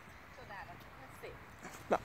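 A dog giving a single short bark near the end, over faint talk in the background.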